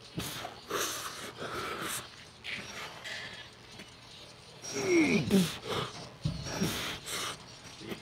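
A man breathing hard in quick, forceful breaths while straining through a set of machine biceps curls, with louder strained grunts falling in pitch about five seconds in.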